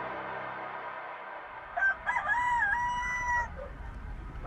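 A rooster crowing: a short opening note, then one long crow that dips in the middle, as the ambient music fades out. It is a sound effect marking morning in the drama.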